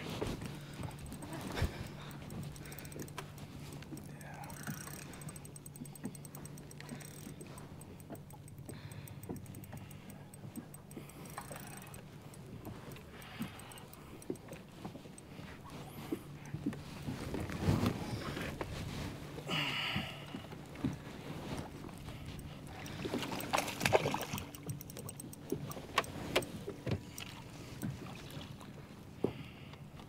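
Small-boat sounds on the water: a steady low hum with light water noise around the hull, and scattered small knocks and clicks from handling on the boat deck. A few louder knocks and rustles come in the middle of the stretch.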